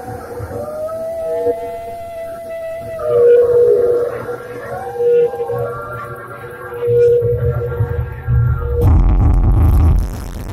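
Live electronic music played on hardware synths, in a beatless passage: a held synth drone with slow gliding, wavering synth tones above it. Low bass swells in from about seven seconds and the sound changes abruptly into a denser low rumble near the end.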